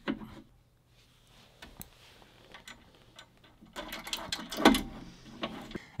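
Light metallic clicks and knocks of rowing-machine parts being handled during assembly: a steel shaft fitted into its mounting bracket and Allen keys handled. A few scattered clicks at first, busier near the end, with the loudest knock toward the end.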